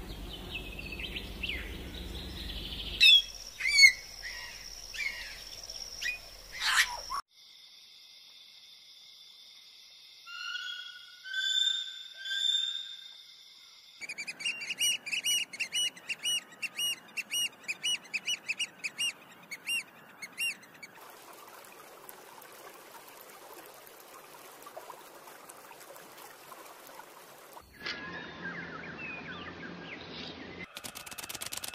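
Bird calls and songs in a string of separate recordings that change abruptly every few seconds. In the middle stretch one bird repeats a short call about twice a second, and for a while near the end there is only a faint hiss.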